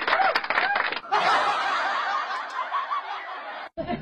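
A woman laughing and giggling into a microphone, in short bursts at first and then in a longer run, cut off briefly near the end.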